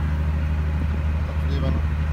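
Diesel generator running steadily with a low hum, under load while supplying part of the current for an 11 kW submersible pump alongside solar power.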